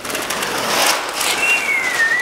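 Brown masking paper with blue painter's tape being peeled up from the floor and gathered, rustling and crinkling loudly. About halfway through, a short squeaky tone slides slightly down in pitch.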